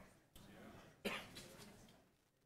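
A single sharp cough about a second in, over faint murmuring voices.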